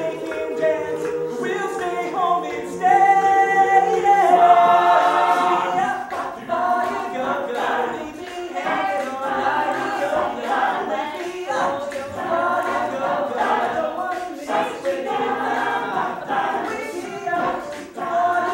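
Mixed-voice a cappella group singing a pop song with voices only: a sung bass line under harmonised backing voices and a lead. The voices swell into a loud held chord about three to six seconds in.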